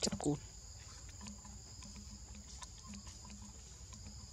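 Steady, high-pitched insect drone in two shrill tones, with faint scattered ticks.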